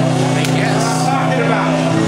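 A low, sustained droning chord from a backing track, shifting to a new chord near the end, with voices faintly audible over it.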